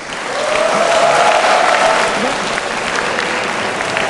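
A large audience of students applauding, swelling over the first second and holding steady, with some voices cheering through it.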